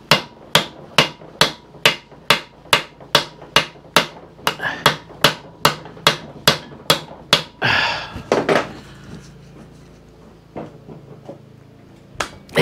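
A mallet tapping steadily on the end of a screwdriver, about two or three strikes a second for some seven seconds, to shock loose a tight screw in the engine block while it is turned anticlockwise. This is the "tap and turn" way of freeing a seized screw without stripping its head.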